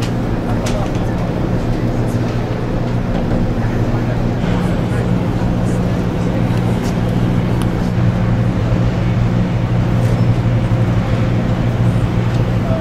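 The car ferry's engines run with a steady low hum while the ship manoeuvres alongside its berth. The hum grows a little louder in the second half.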